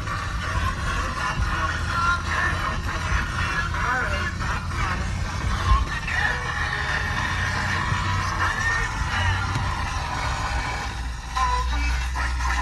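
Music playing from the vehicle's radio inside the cab, over the low steady rumble of the engine and tyres on a rough dirt trail, with a thump about halfway through.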